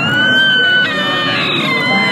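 A small child's high-pitched squeal of excitement: a rising squeal held for almost a second, then a second, slightly lower squeal that slowly falls.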